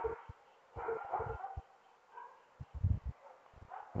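A dog barking faintly, a few short barks about a second in and again near the middle, with some low thuds around them.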